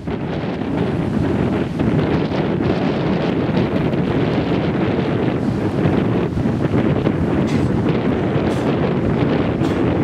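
Wind buffeting the microphone over the steady wash of small waves breaking on a sandy beach.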